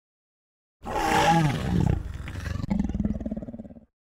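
A deep, roar-like sound that starts about a second in, turns into a rapid pulsing growl in its second half, and cuts off sharply just before the end.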